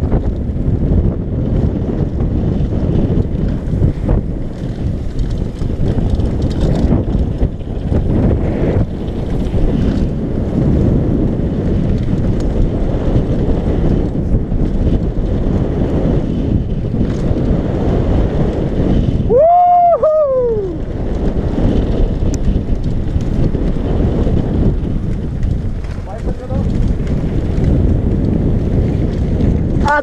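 Wind buffeting a helmet-mounted action camera's microphone while a mountain bike rolls fast down a gravel trail, its tyres crunching over the loose surface. About two-thirds through comes a short high call that falls in pitch.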